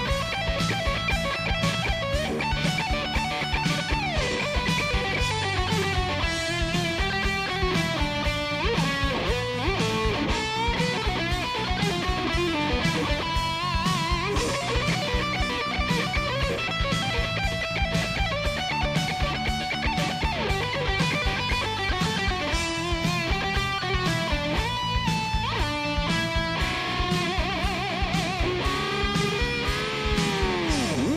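Electric guitar solo: fast runs of notes played over a steady rhythmic pulse, ending in swooping pitch dives and rises.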